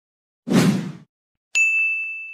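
Title-card sound effects: a short whoosh about half a second in, then a bright bell-like ding about a second and a half in that rings on and slowly fades.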